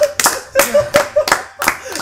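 A small group clapping their hands in an uneven patter, about four claps a second, with a voice heard along with it in the first half.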